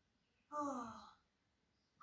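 A cartoon character's voice played through a TV speaker: one short vocal sound, falling in pitch, about half a second in.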